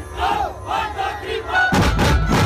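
Several short shouted vocal cries in a row over a low drone, then loud drum hits from a dhumal band start about three-quarters of the way through.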